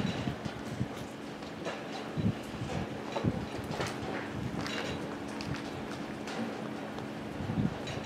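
A distant diesel locomotive running: a steady low hum that stops shortly before the end, with light wind on the microphone and a few faint knocks.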